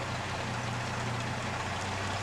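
Car engine idling with a steady low hum, the vehicle creeping back in reverse to line its hitch ball up under a trailer coupler.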